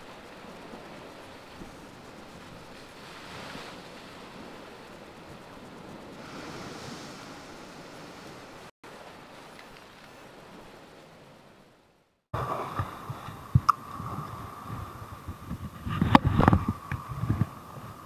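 Sea surf washing over a rock shelf, a soft steady wash that swells twice. It fades out about twelve seconds in. Close handling noise from a camera on the fishing rod follows, with low thumps, a few sharp clicks and a steady thin whine, loudest near the end.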